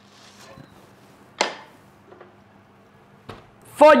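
A single sharp knock of a hard object about a second and a half in, with a fainter click near the end, against quiet kitchen room tone.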